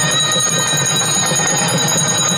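Brass puja hand bell rung quickly and continuously, its high ringing held through a dense patter of strokes.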